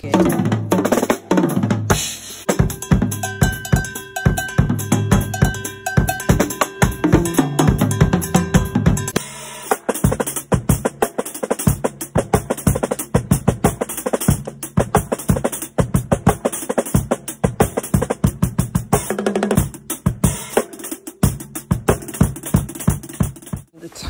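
Tama Star Bubinga drum kit played in a fast, busy pattern: rapid strikes around the toms and snare over the bass drum, with rimshots.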